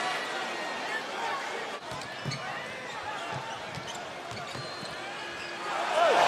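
Basketball being dribbled on a hardwood court, a string of low bounces from about two seconds in, over the steady noise of an arena crowd.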